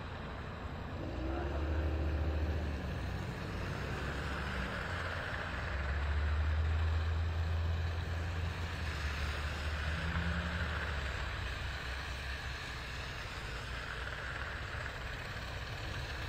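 Vehicles driving slowly past on a wet, snowy highway: the low engine rumble of passing pickup trucks swells about two seconds in and again around seven seconds, over a steady hiss of tyres on the wet road.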